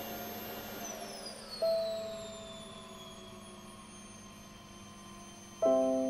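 A vacuum cleaner is switched off and its motor whine falls steadily in pitch as it spins down. A single piano note sounds about one and a half seconds in and fades away, and a piano chord is struck near the end.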